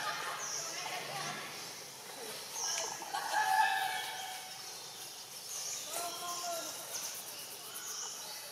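Birds chirping, with short high notes again and again, mixed with a few longer wavering animal calls, the loudest about three seconds in.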